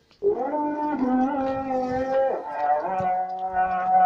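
Voices chanting in long held notes, the pitch shifting twice, with a second, lower voice joining about three seconds in.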